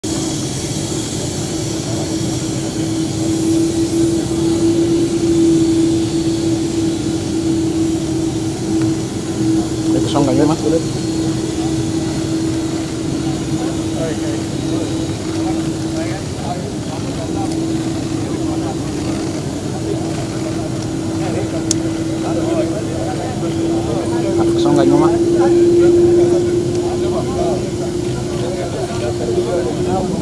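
Turboprop aircraft engine running with a steady drone that rises slightly in pitch near the end, under scattered voices.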